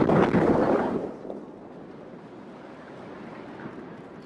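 Explosive demolition charges going off at the base of a brick smokestack, heard from across a river: a loud burst of noise in the first second, then a low steady rumble.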